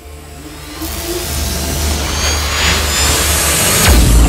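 Logo-sting sound design: a low drone under a rushing whoosh that swells steadily louder, with a few sliding tones in it. It ends in a sudden deep impact just before the end.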